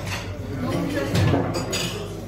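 Restaurant background chatter from other diners, with a light clink of tableware.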